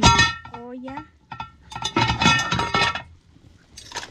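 Metal pot lid clanking and ringing against a large metal cooking pot as it is lifted off: a sharp clatter at the start and a longer ringing clatter about two seconds in.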